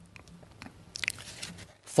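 Pages of a spiral-bound paper script being handled and turned: scattered small clicks and a brief paper rustle about a second in.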